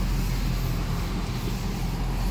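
Car engine running steadily at low speed, a low even rumble heard from inside the cabin.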